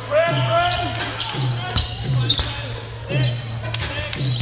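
A basketball being dribbled on a hardwood court, with low bounces coming irregularly about once a second and a few sharper knocks.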